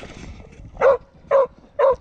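Smålandsstövare hound barking three times in quick succession, about half a second apart, starting near the middle.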